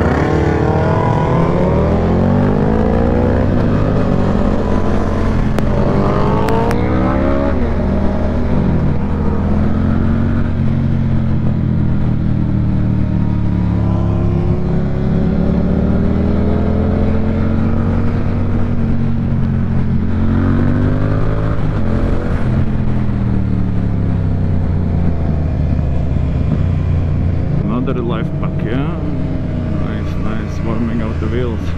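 Yamaha Tracer 7's parallel-twin engine through a DSX-10 aftermarket exhaust, accelerating from a standstill with several quick upshifts in the first seven seconds. It then settles into a steadier run, the revs slowly rising and falling.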